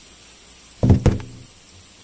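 A spider's legs tapping an inflated rubber balloon: one hollow knock with a short low ringing about a second in, followed by a fainter click.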